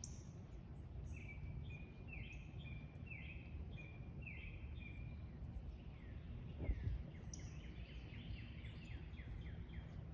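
A songbird sings outdoors, repeating a short two-part phrase about once a second, then a quick run of falling notes later on, over a low steady outdoor rumble. A soft thump comes about two thirds of the way through.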